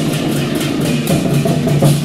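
Chinese war-drum troupe playing large red barrel drums in a fast, steady rhythm, with hand cymbals crashing repeatedly over the drumming.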